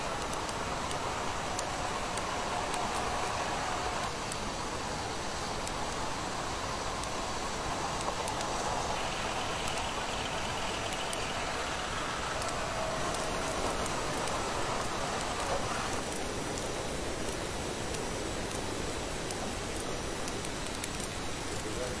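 Tracked armoured fighting vehicle running, a steady noisy drone of engine and tracks with a faint higher whine that shifts several times.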